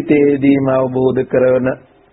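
A Buddhist monk's voice chanting, holding long syllables on steady pitches, stopping just before the end.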